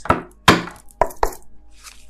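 Four sharp taps on a hard object in about a second and a quarter, the second one the loudest. A faint ringing tone lingers after the last tap.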